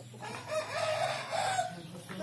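Indian game rooster (Hint horozu) crowing once, one call of about a second and a half with a short break in the middle.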